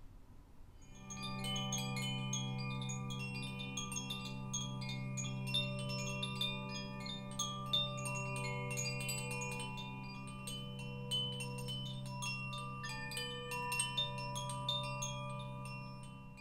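Wind chimes ringing in quick, scattered strikes over a steady low drone of held tones, starting about a second in and fading away at the very end.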